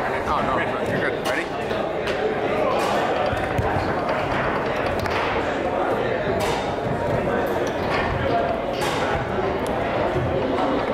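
Foosball ball and rods in play: short sharp knocks and clacks as the ball is struck by the players' men and hits the table, over a steady murmur of talk in a large hall.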